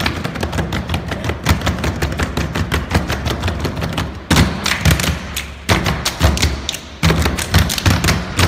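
Rapid rhythmic slapping and tapping of hands on a wooden floor, many strikes a second in quick runs with brief breaks, over a beat-driven music track.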